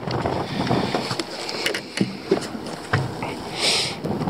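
Wind buffeting the microphone and choppy water slapping against a small fishing boat's hull, with a few light clicks and knocks and a short hissing burst near the end.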